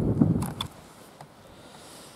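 A brief burst of rumbling noise on the camera microphone in the first half-second, with a few clicks, then a faint steady hiss.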